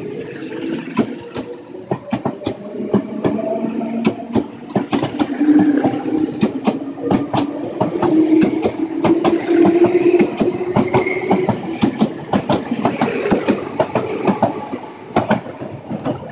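Meitetsu 1000/1800 series eight-car electric train departing and accelerating past: rapid clickety-clack of wheels over rail joints, with a low hum rising slowly in pitch as it gathers speed, dying away near the end as the last car clears.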